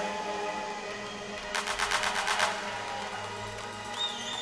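Live electronic music in a quiet breakdown: sustained synthesizer tones, with a quick run of clicks lasting about a second in the middle.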